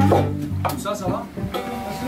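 Guitars being picked loosely, a low note ringing under a few plucked notes, with a voice talking briefly about a second in.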